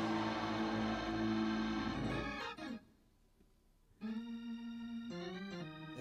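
Church keyboard playing sustained organ chords: one chord is held and fades out about two and a half seconds in. After about a second of silence, a new chord comes in and steps down to a lower chord a second later.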